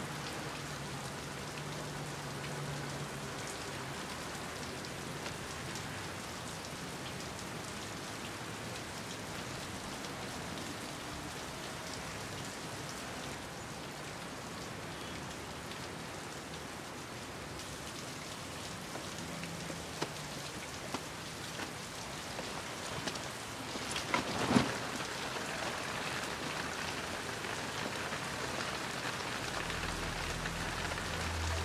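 Steady rain falling, with a short cluster of sharp knocks about 24 seconds in.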